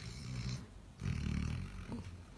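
Basset hound snoring in his sleep: one snore ends about half a second in, and a louder, deeper one follows about a second in.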